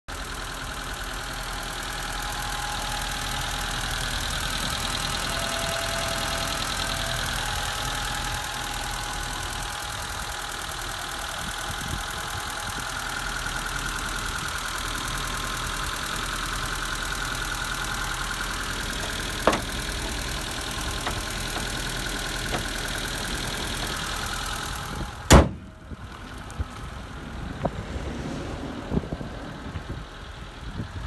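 Nissan Skyline FR32's CA18i four-cylinder engine idling steadily, heard from an open engine bay. Near the end comes a single loud slam as the bonnet is shut, after which the idle is quieter, with a few small clicks.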